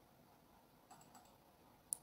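A few faint computer mouse clicks over near silence: a small cluster about a second in and one sharper click near the end.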